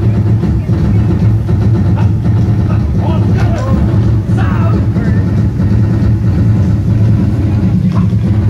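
A live drum band playing loud, dense, continuous drumming, with a few voices calling out over it around three and four and a half seconds in.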